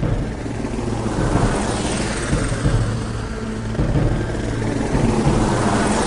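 Hardcore techno in a breakdown: a sustained low bass drone under noise sweeps that rise and fall, with a whoosh like a passing jet.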